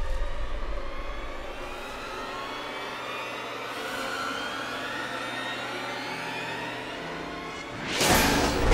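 Suspense background score of a TV drama: sustained, droning synthesizer tones over a low hum. The hum fades out near the end, just as a loud swell begins.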